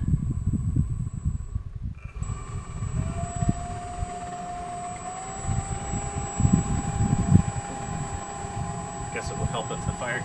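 Small electric ducted fan blowing a waste-oil burner. A steady whine comes in about two seconds in and steps up in pitch as the fan is sped up, over the low, uneven rumble of the burner fire.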